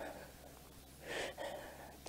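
A woman's audible breath about a second in, a short breathy intake between her spoken phrases.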